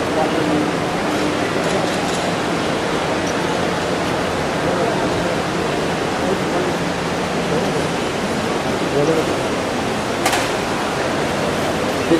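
Steady noisy ambience of a busy airport terminal: crowd hubbub and building noise, with indistinct voices now and then. A single sharp click comes about ten seconds in.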